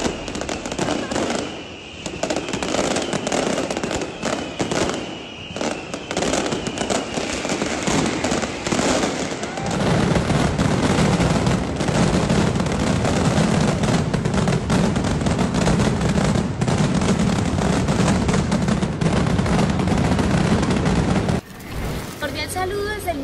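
Fireworks display: scattered sharp bangs and crackles with a few falling whistles, then from about ten seconds in a dense, continuous barrage of explosions with a heavy low rumble. It cuts off suddenly near the end.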